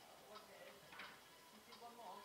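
Faint, light clacks of wooden boards knocking together as they are handled, three in the two seconds, the one about a second in the sharpest, with a faint voice underneath.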